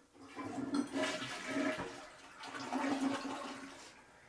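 Water rushing through bathroom plumbing, with a steady low tone under the rush, coming in two surges and dying away near the end.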